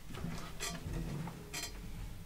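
Faint handling and movement noise: a few soft knocks and rustles as a person gets up from a stool and carries an acoustic guitar to a wall hanger.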